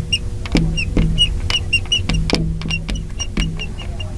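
Marker tip squeaking on a glass lightboard while words are written: a run of short, high squeaks, several a second, with light taps as strokes begin, over a low background hum.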